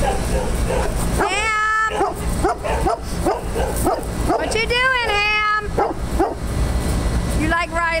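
Dogs playing together, giving two long, high whining calls that rise and fall, about a second in and again just before five seconds, with shorter yips between.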